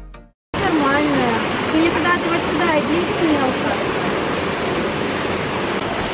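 Waterfall pouring into a pool: a loud, steady rush of falling water that starts suddenly about half a second in, after a brief silence. Voices talk faintly beneath it.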